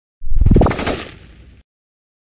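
Logo-intro sound effect: a loud burst of rapid rattling hits with a rising tone, fading away over about a second and a half.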